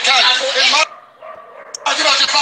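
A loud, strained voice, breaking off for about a second in the middle and then starting again.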